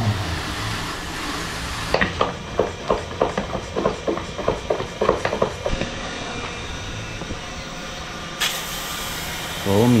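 Water spraying from a hose onto a scooter, then a run of quick rhythmic strokes, about three a second, as a hand-pump pressure sprayer is pumped up. Near the end comes the hiss of the pressurised sprayer misting foam.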